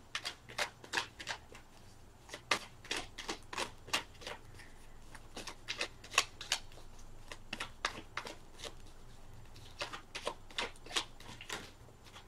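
An oracle card deck being shuffled by hand: a run of irregular light clicks and slaps of card on card, two or three a second.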